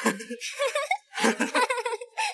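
Happy human laughter in two bouts of about a second each, with a short break between them.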